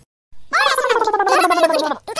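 A cartoon child's voice letting out one long, wavering wail that slides slowly down in pitch, starting about half a second in.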